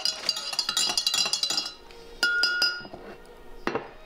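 Spoon stirring coffee in a ceramic mug, clinking rapidly against the inside for the first second and a half. A few separate clinks follow, one ringing briefly.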